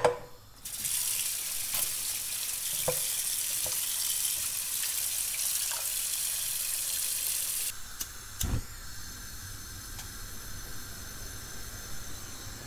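Tap water running into a stainless steel pot of whole potatoes in a kitchen sink. It starts about a second in and is cut off after about seven seconds, followed by a single knock.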